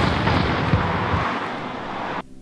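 An explosion sound effect dubbed in: the rushing, rumbling tail of a blast dying away. The low rumble fades out a little past halfway while a hiss carries on.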